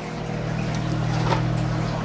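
Electric motor of a Deltec kalkwasser stirrer running with a steady hum, spinning the paddle that keeps the lime water mixed.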